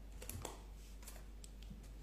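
Faint scattered clicks of typing on a computer keyboard, a handful of keystrokes mostly in the first second or so.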